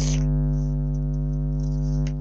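A steady, unbroken drone of several held tones, low and even, like a synthesizer pad or an electrical hum, with a few faint ticks above it.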